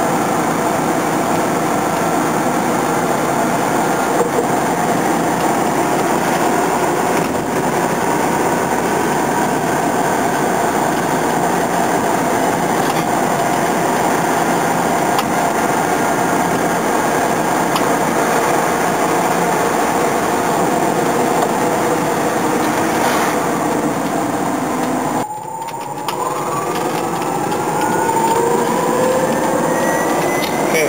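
Electric drive motor of an 84-volt converted 1971 VW Beetle whining under heavy load, about 160 amps, with road noise in the cabin. The sound drops briefly about 25 seconds in, then the whine rises steadily in pitch as the car picks up speed.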